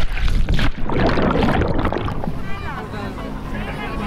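Loud splashing, churning water from someone plunging into the sea off a boat's ladder. About halfway in it gives way to voices calling out over the steady low hum of the boat's engine.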